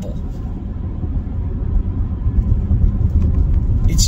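Steady low rumble of a car on the move, heard from inside the cabin: road and engine noise with no sudden events.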